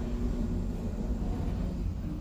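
Steady low rumble of an elevator car in motion, heard from inside the cabin.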